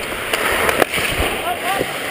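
Ice skate blades scraping and carving on the ice, with several sharp clicks of hockey sticks and puck striking in the first second, during a scramble in front of the net.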